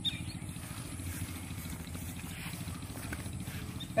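Steady, quiet outdoor background rumble with no distinct event, the low end strongest.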